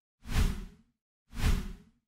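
Two whoosh sound effects from an animated logo end card, each about half a second long, a hiss with a deep rumble underneath; the first comes a quarter second in, the second about a second later.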